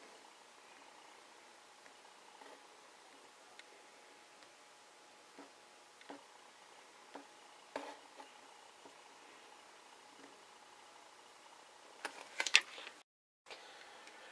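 Quiet room with a few faint, isolated taps of a fingertip on a smartphone's touchscreen. A short cluster of louder taps or knocks comes near the end.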